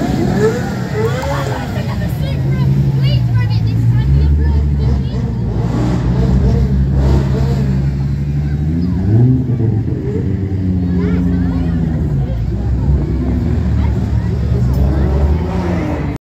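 Sports car engines, among them a Nissan GT-R and a Toyota Supra, as the cars drive slowly past one after another, mostly at low revs, with a rising rev about a second in and another around nine seconds in. Crowd chatter mixes in.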